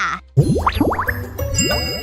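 Cartoon-style music sting: after a brief dip, a sudden burst of quick upward-sliding swoops, then sparkly high chime tones over music.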